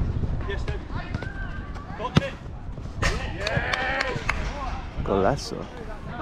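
Players shouting during a five-a-side football game, with one sharp thud of the ball being kicked about two seconds in.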